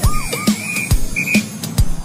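Background music with a steady beat. A cartoon police siren's quick, repeated rising-and-falling whoops run on for about the first half second. A high steady tone is then held for most of a second and comes back briefly once.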